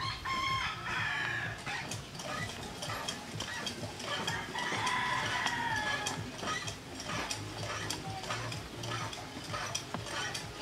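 A rooster crowing twice: a short crow right at the start and a longer, held crow about four seconds in.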